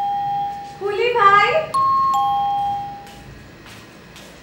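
Two-tone doorbell chiming ding-dong, a higher note then a lower one. One ding-dong is fading out in the first second, and the bell is rung again a little after the middle and rings on for about a second. Between the two chimes a high voice calls out briefly.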